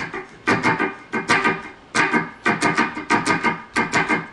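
Electric guitar strummed with the fretting hand resting across the strings to mute them, giving short, percussive scratch strokes in a steady rhythm, about two or three a second. These are the dead notes that tab marks with an X.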